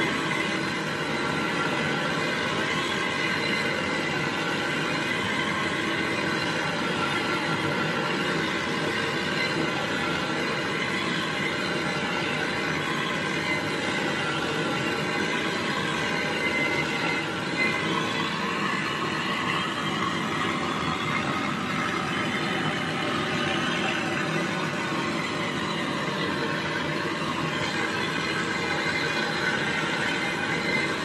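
Handheld butane canister torch burning with a steady hiss as it heats the copper pipe joints at a refrigerator compressor for brazing.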